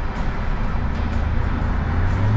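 Steady engine hum and road noise of a moving car.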